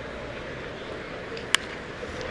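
Steady ballpark crowd murmur, then a single sharp crack about one and a half seconds in: a baseball bat hitting the pitch.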